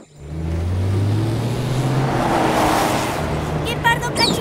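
Cartoon sound effect of a motor vehicle's engine speeding past. It starts suddenly, swells to its loudest a little past the middle, then eases.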